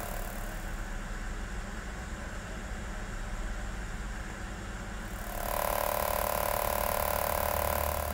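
Electromagnetic body-sculpting machine pulsing in its manual wave program, its sound changing as it moves from one programmed wave to the next. A rough, rapid pulsing gives way about five seconds in to a louder, steady buzzing tone.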